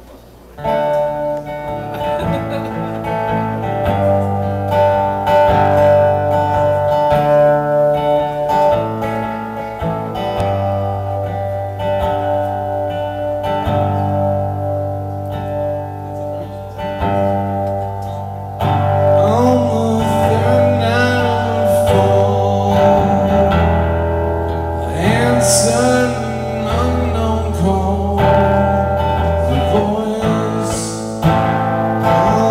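Solo archtop guitar playing a slow song intro that starts about half a second in, with a man's singing voice joining about two-thirds of the way through.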